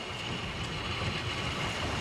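Steady outdoor ambience between lines of dialogue: an even rumbling hiss with a faint constant high tone.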